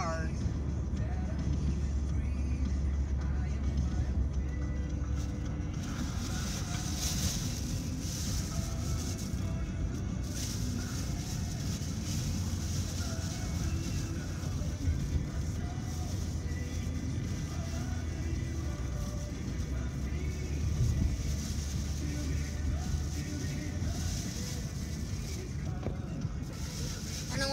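Steady engine and road noise inside a moving car, with the car radio playing music under it.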